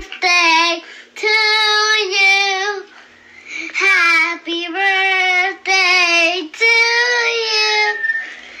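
A young girl singing alone, holding long notes with a wavering pitch in several phrases, with short breaks for breath between them.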